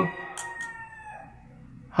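A faint, drawn-out animal call in the background: one tone with overtones that sags slightly in pitch and fades out within about a second and a half. A light click about a third of a second in.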